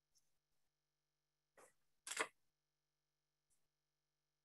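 Near silence of an open video-call line, broken by two short noises about a second and a half and two seconds in, the second one louder.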